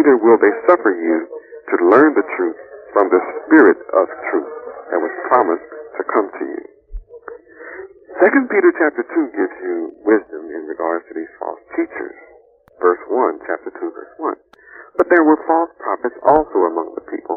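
Speech only: a man lecturing without pause, his voice thin, with little bass or treble, like a radio or old tape recording.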